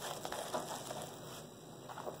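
Faint light taps and rustling of eggs being set snugly into a cardboard shipping box, a few soft ticks early on, then quieter.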